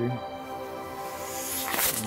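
Steady ambient background music with a held drone; a short burst of noise near the end.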